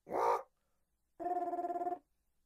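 Electroacoustic music built from electronically processed voice. A short vocal fragment is followed, just past the middle, by a held, fluttering, call-like tone.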